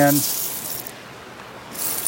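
A hand stirring through a bed of small loose seashells: a dry, high-pitched rustling clatter in two bursts, one lasting most of the first second and a shorter one near the end.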